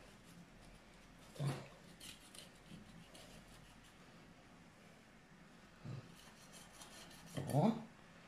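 Faint scraping and slicing of a kitchen knife cutting through the skin and fat of a raw duck's tail end as the unwanted bits are trimmed off. Brief voice sounds come about a second and a half in and near the end.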